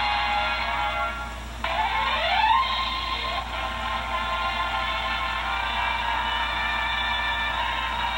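A TV show's closing theme music played through a small portable DVD player speaker, thin and cut off in the highs: a rising run about two seconds in, then a long held chord.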